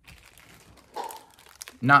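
Clear plastic packaging crinkling and rustling softly as small tools sealed in it are picked up and handled, a little louder about a second in.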